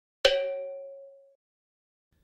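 A single bell strike, clear and ringing, that fades away over about a second.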